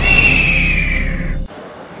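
Loud sound-effect sting: a low rumble with a whistling tone that falls in pitch, cutting off suddenly about one and a half seconds in.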